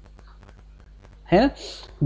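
Quiet room tone with a few faint ticks, then a man says "hai na" a little past halfway through, followed by a short breathy, whispery exhale.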